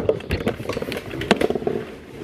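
Handling noise: fabric rubbing and scraping against a handheld camera's microphone, with irregular clicks and knocks as it is moved about under furniture.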